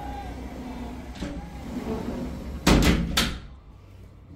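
A sliding window pushed shut, ending in a quick clatter of three or four knocks as the frame hits home about three seconds in. After that the background goes quieter.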